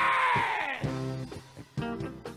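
Live band music: a drawn-out shout of voices sliding down in pitch answers the call to say 'yeah', and then, about a second in, the band plays on with guitar and bass guitar.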